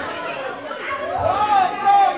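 Speech: a preacher's voice over the church sound system, with chatter from the congregation.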